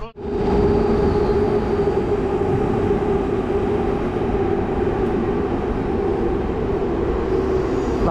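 A train running along an elevated brick railway viaduct: a steady rumble with a held mid-pitched hum.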